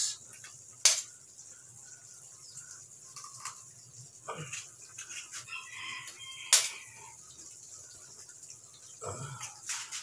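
Eggs cracked against the rim of a pan: two sharp cracks, about a second in and again after six and a half seconds, with faint calls in the background.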